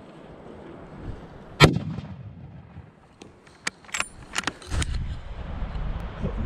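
A hunting rifle shot about a second and a half in, then several sharp clicks of the rifle being handled, then a low rumble of wind on the microphone.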